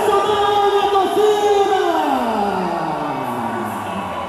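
Music for a quadrilha dance: a singing voice holds one long note, then slides smoothly down in pitch over the last two seconds.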